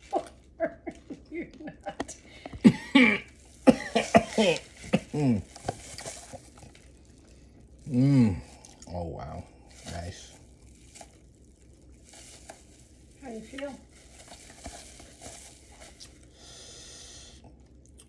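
A man's voice reacting to the burn of a super-hot chili chip: coughs and strained, mumbled vocal sounds in short bursts, loudest in the first half, with quieter pauses between.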